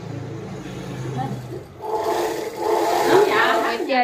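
Indistinct voices over a steady low hum and a rushing background noise; the voices grow louder and clearer about halfway through.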